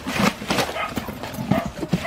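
Irregular wet slaps and knocks, several a second, of milkfish (bangus) being handled on a plastic tarp and tossed into plastic crates while they are sorted by hand.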